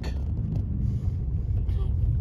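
A car driving along a road, heard from inside the cabin: a steady low rumble of engine and tyres.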